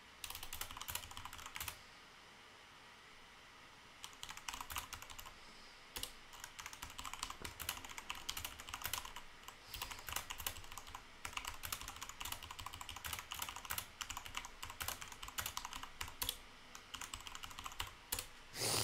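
Typing on a computer keyboard: a short run of keystrokes, a pause of about two seconds, then fast, near-continuous typing with brief breaks.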